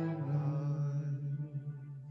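Slow liturgical music: a long held low note with rich overtones, growing quieter in the second half.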